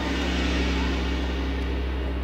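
A deep, steady low drone with a hissing wash above it that slowly fades: a dark sound effect laid on the video's soundtrack over a scene transition.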